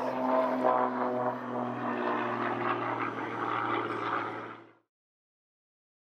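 Propeller engine of a Pitts aerobatic biplane in flight, a steady drone that fades out about four and a half seconds in.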